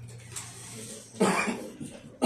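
A man coughs once, loudly, into his hand about a second in.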